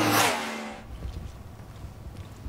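Background music cuts off at once and a brief loud rushing sound takes its place, dying away within about a second. A low, quiet outdoor rumble with wind-like noise follows.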